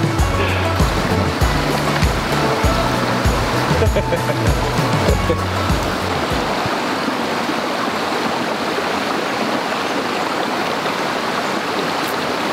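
Background music with low bass notes that stops abruptly about halfway through, over the steady rush of a small mountain stream that then carries on alone.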